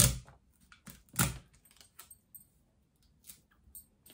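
Sticky tape pulled and torn from a desk tape dispenser, with one sharp tear or knock about a second in, then a few faint taps and rustles of hands pressing the tape onto a paper pattern.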